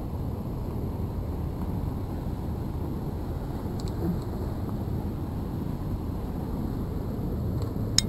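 Steady low rumble of water rushing through a canal spillway, with a few faint clicks partway through.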